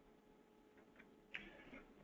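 Near silence with faint room hiss, broken by a couple of faint clicks in the second half.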